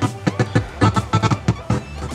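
Music with drums streamed over Bluetooth from a phone and playing through a Retrosound Hermosa car radio.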